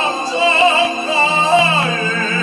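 A tenor singing solo with string orchestra accompaniment, his held notes wavering with vibrato.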